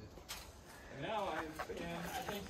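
A person's voice, words unclear, from about halfway in, after a quieter first half.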